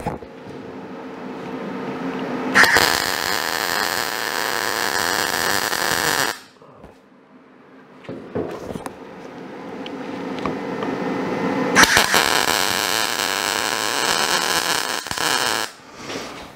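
Two runs of MIG welding on sheet steel, each a steady crackling arc lasting about three and a half seconds and starting sharply, as short weld stitches are laid across a seam. A quieter sound swells up before each run.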